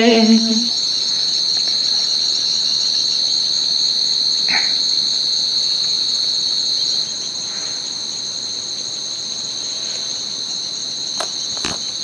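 Chirring insects in a steady, high-pitched drone that drops a little in level about seven seconds in, with a few faint clicks near the end.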